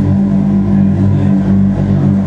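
Black metal band playing live: a loud, sustained drone of distorted electric guitar, held steady with no drum hits.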